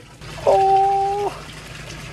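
Water lapping and trickling in a shallow concrete turtle tank, with a single steady held tone, like a drawn-out "ooh", lasting just under a second near the start.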